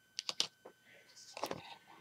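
Handling noise: about four light, sharp clicks in the first half second, then a brief soft rustle about a second in.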